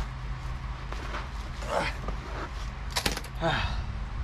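A man grunting and breathing out hard as he crawls out from under a motorhome and sits up, twice, with a sharp clink about three seconds in. A steady low hum runs underneath.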